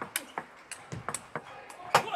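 Table tennis rally: the plastic ball clicking sharply off the players' rubber-faced bats and bouncing on the tabletop in a quick, uneven run of clicks, the loudest near the end.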